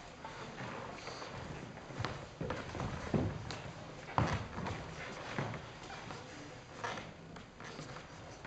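Footsteps and shoe scuffs on a wooden sports-hall floor as two fencers step and circle, a handful of short, irregular footfalls over quiet room sound.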